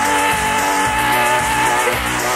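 A slowed-down, reverb-heavy rock song playing between vocal lines: one high note is held over the band, with a regular low drum beat underneath.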